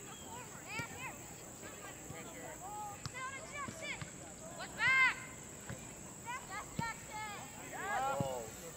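Players and sideline spectators shouting across a grass soccer field: short calls rising and falling in pitch, heard at a distance, the loudest about five seconds in.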